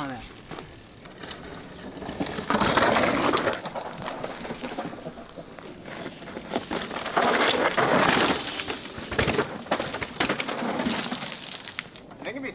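A mountain bike ridden fast down a dry, rocky dirt trail: tyres skidding and scrabbling over dust and stones. It comes in two loud passes, about two and a half seconds in and again near eight seconds, with quieter trail noise between.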